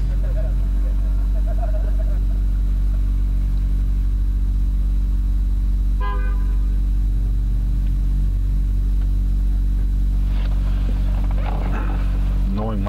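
Steady low hum and rumble heard from inside a parked car, with a short car-horn toot about halfway through that fades out over a second.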